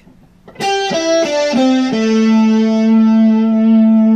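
Epiphone SG Rocker electric guitar, played with a heavy pick, plays a short, mostly pentatonic lick. Starting about half a second in, five single notes step downward: B string eighth and fifth frets, G string seventh and fifth frets, then the D string seventh fret. That last note is held and rings on.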